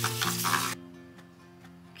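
A pot of oatmeal cooking in almond milk, stirred on the stove, gives a noisy scraping, bubbling sound that cuts off abruptly under a second in. Soft background music with held notes plays throughout and is all that is left afterwards.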